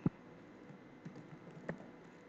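Typing on a computer keyboard: a sharp keystroke click right at the start, then a few fainter, irregularly spaced keystrokes, one clearer near the end.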